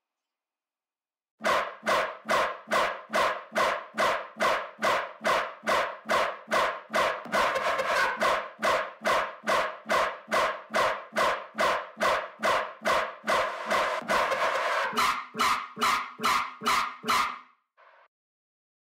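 A sampled bass synth loop played back in a music production session: short pitched stabs repeating evenly about two and a half times a second. It starts about a second and a half in and stops just before the end, the stabs turning thinner for the last few seconds.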